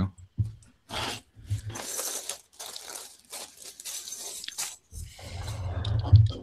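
Hands rummaging through a pile of loose plastic LEGO pieces on a desk, the parts clattering and scraping against each other in a steady run of small rattles.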